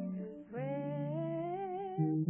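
An elderly woman singing one long held note with vibrato, rising slightly, over sustained chords on a digital piano; the voice breaks briefly about half a second in before the note begins.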